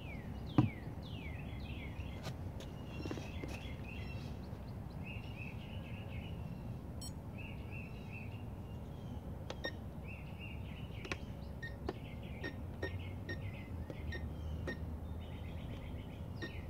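Small birds chirping in repeated short trilled phrases, with a few falling whistles, over a steady low outdoor rumble. A single sharp knock, the loudest sound, comes about half a second in.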